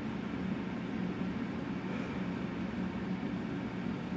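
Steady machine hum with a constant low tone and an even hiss above it, unchanging throughout.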